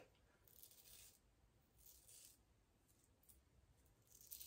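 Faint scraping of a Wolfman WR2 double-edge safety razor with an Astra SP blade cutting stubble through lather: a few short, soft strokes about a second apart, during a touch-up pass for a baby-smooth finish.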